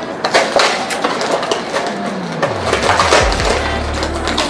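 Plastic wrapper inside a cardboard box of Melba toast crackers crinkling and crackling as it is pulled open by hand, a rapid run of small crackles.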